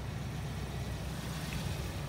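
2014 Kia Sportage's engine idling: a steady low hum.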